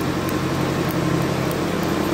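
A machine running nearby with a steady low hum, and faint scattered light ticks.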